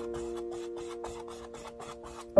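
Flat paintbrush scrubbing acrylic paint onto canvas in quick back-and-forth strokes, a dry rasping rub several times a second, over soft held notes of background music.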